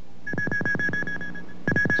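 Electronic closing theme music: a held high synthesizer note over a quick run of falling blips, about seven a second, with a brief break near the end.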